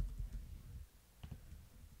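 Faint typing on a computer keyboard: a run of soft keystrokes in the first second, then a sharper click a little past a second in.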